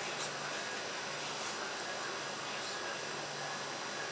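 Steady rushing noise of a commercial kitchen's ventilation fan, with a faint thin high whine running under it.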